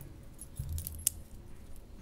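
A quiet lull in a meeting room: faint room tone with one sharp click, like a small metallic clink, about a second in.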